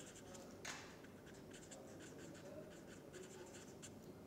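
Faint scratching and squeaking of a felt-tip marker writing strokes of a word on paper.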